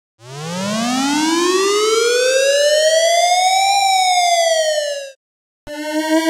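A single siren wail, a clean electronic sound effect. It starts about a quarter second in, rises slowly in pitch for about three and a half seconds, falls for a second and a half and then cuts off suddenly.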